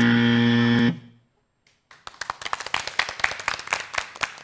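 Game-show wrong-answer buzzer: one steady buzz lasting just under a second that cuts off sharply, marking the answer as not on the board. After a short silence, audience clapping starts about halfway through.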